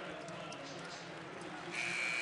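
Arena crowd murmur during live play. Near the end a referee's whistle starts, one steady high-pitched blast that stops play.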